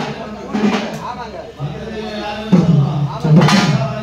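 Men's voices speaking and calling out in a small gathering, louder for a moment about two and a half seconds in and again near the end.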